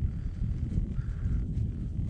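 Low rumbling noise with light, irregular knocks: wind and handling on a body-worn camera's microphone as gloved hands hold an ice-fishing rod and spinning reel.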